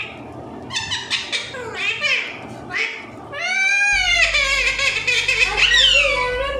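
An Alexandrine parakeet calling: a run of short squawks with pitch sliding up and down, then a longer arched call about three and a half seconds in followed by nearly continuous calling.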